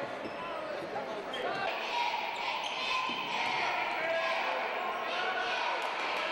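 Crowd in a school gymnasium during a basketball game: many voices talking and calling out at once, echoing in the hall, growing a little louder about two seconds in.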